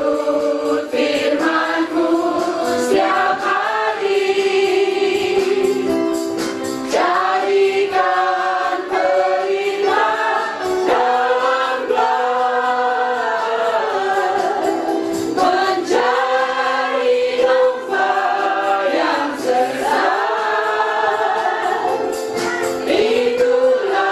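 A church congregation singing a hymn together, many voices in long held notes.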